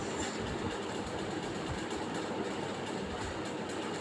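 Chopped onions sizzling steadily as they fry in hot oil and ghee in a kadhai, with a spoon stirring and scraping through them.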